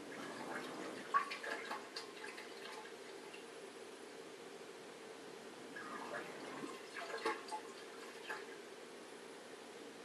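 Bosch dishwasher drain pump kicking in twice in short spurts, gurgling and splashing at the water in the sump over a faint steady hum. It starts and stops without pumping much water out: the start-stop draining fault.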